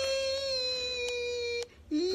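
A woman's voice holding one long, high, wordless note that drifts slightly down and breaks off about a second and a half in.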